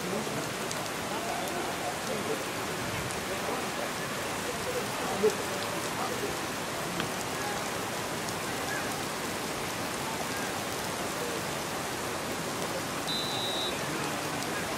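Heavy rain falling steadily, with faint shouts of voices under it. A single sharp knock about five seconds in, and a short high whistle blast near the end.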